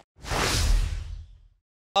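Whoosh sound effect with a deep rumble underneath, swelling in just after the start and fading away over about a second. A man starts speaking right at the end.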